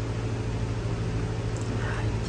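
A steady low-pitched hum with a faint hiss over it, unchanging throughout.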